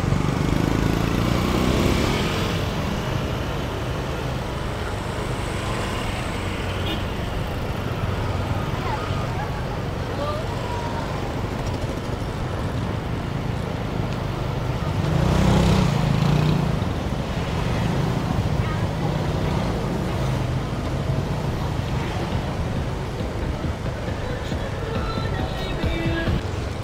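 Street traffic of motor scooters running past on a busy road, a steady rumble with voices of people around. It swells louder at the start and again about fifteen seconds in as vehicles pass close.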